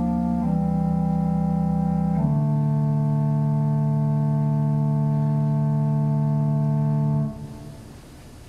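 Church organ playing slow sustained chords, changing a few times and ending on a long held chord that cuts off about seven seconds in, with the room's reverberation dying away after it.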